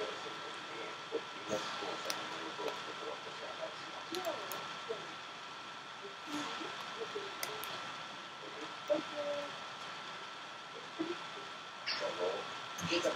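Small handling clicks and rustles as hair is sectioned and tied into a little ponytail with an elastic, with a few faint murmured voice sounds, over a steady hiss and a thin high tone.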